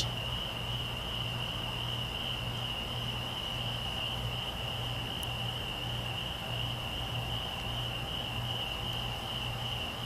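Crickets trilling steadily in one continuous high note, with a faint low hum underneath.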